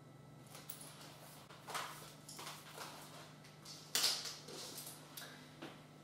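Faint handling noises as a tape measure is worked across the top of a cake: soft rustles and light taps, with one sharper click about four seconds in, over a faint steady low hum.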